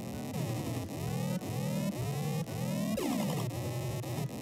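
Synthesized square-wave sound effects from the micro:bit simulator, repeating and sweeping up and down in pitch. The pitch follows the simulated board's tilt (acceleration) and compass heading as it is moved. Underneath runs a repeating low bass beat.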